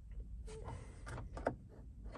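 Light plastic clicks and taps, several spread over a couple of seconds, as fingers press a SwitchBot button-pusher onto a van's plastic door trim by the central-locking button.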